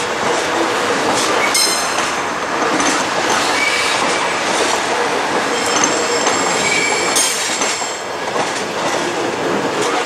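Korail Bundang Line electric multiple unit rolling slowly past on curved track: a steady rumble of wheels on rail, with high-pitched wheel squeal that comes and goes and a few sharp clicks from the rail joints.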